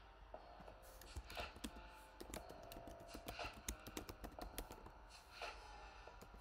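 Typing on a computer keyboard: a quick, faint run of key clicks starting about a second in and thinning out near the end.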